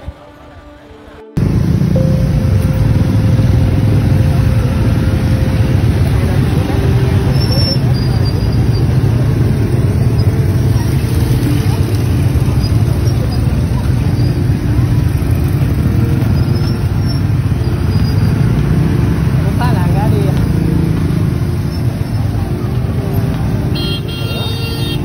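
Many motorcycle engines running together with road noise as a convoy of riders moves along. The sound cuts in suddenly about a second in and stays loud and steady.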